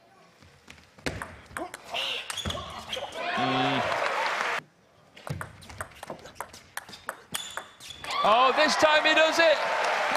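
Table tennis ball clicking off bats and table in quick strokes during a rally. About eight seconds in, loud shouting and cheering break out as the match-winning point is taken.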